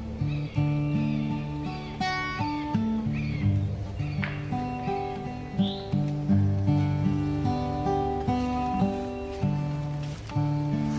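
Acoustic guitar strummed in a steady rhythm, an instrumental passage of a worship song with no singing. Birds chirp faintly in the background a few times.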